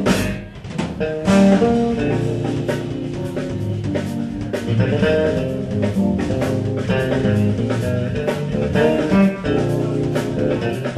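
Live smooth jazz trio playing: bass, keyboards and drums, with sustained chords over a steady drum beat. A brief dip in level just after the start gives way to a loud hit about a second in.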